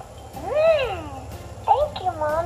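Baby Alive doll's recorded electronic voice giving a long whine that rises and falls in pitch, then a shorter one near the end.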